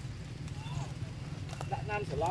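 A steady low hum, with a faint gliding tone about a second in. A person's voice starts speaking near the end.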